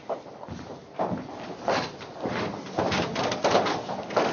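A busy jumble of shoes scuffing, sliding and stepping on a floor, from several dancing couples moving at once, thickening about a second in.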